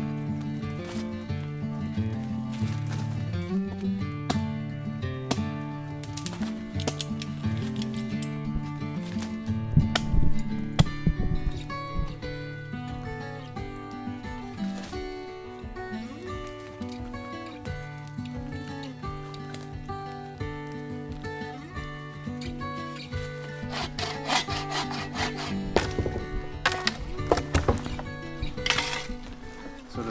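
Background music, over which dead wood is sawn and cracked by hand. The wood sounds come in clusters of sharp strokes about ten seconds in and again near the end.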